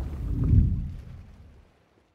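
Deep cinematic boom from an animated logo intro about half a second in, dying away over about a second.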